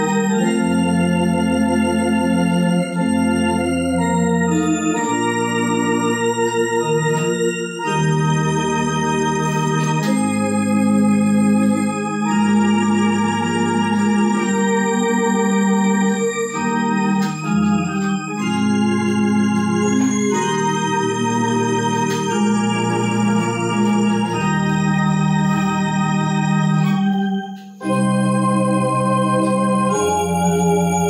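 Rohnes Onix Plus electronic organ played in slow sustained chords, with a held bass note under each chord changing every second or two. There is a brief break in the sound shortly before the end.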